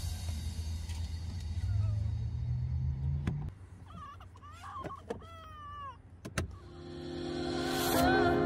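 A car's electric window motor whirring, its pitch rising, then stopping with a click about three and a half seconds in. A few short high squeaks and clicks follow, and music fades in near the end.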